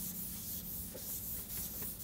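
Board duster being rubbed across a chalkboard to erase chalk writing: a soft, steady scrubbing.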